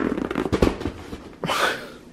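Close handling noise: a quick run of small knocks and crackles from a plastic toy held right against the microphone, then a short hissing rustle about a second and a half in.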